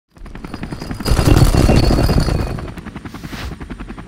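Rapid, even thudding pulse of a helicopter's rotor, swelling loudest about a second in and easing off toward the end.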